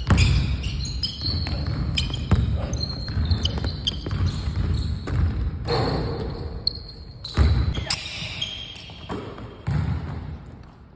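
A basketball being dribbled on a hardwood gym floor: a run of quick bounces ringing in a large gym.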